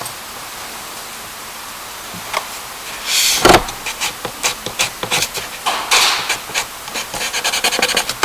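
Charcoal scratching and rubbing on paper in short, uneven strokes, beginning about three seconds in with one louder scrape.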